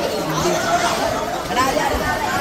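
Chatter of many boys' voices at once, overlapping excited talk and calls.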